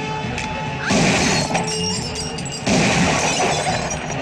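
Film background score with two loud crashing, shattering hits, one about a second in and another near three seconds in.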